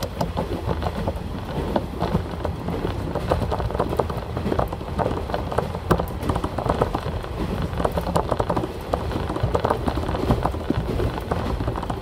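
Cabin sound of a moving diesel railcar: a steady low rumble of engine and running gear under a constant clatter of many small ticks and knocks from the wheels and rattling fittings.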